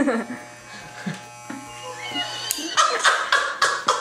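Electric hair clippers buzzing with a steady low hum, switched off about two and a half seconds in, followed by loud laughter.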